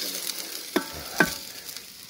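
Chopped onions sizzling as they fry in a saç pan while a wooden spoon stirs them, with two sharper spoon scrapes on the pan about half a second apart near the middle. This is the first stage of the dish: the onions are frying down until they soften.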